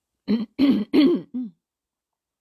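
A woman clearing her throat close to the microphone: four short voiced bursts in quick succession over about a second.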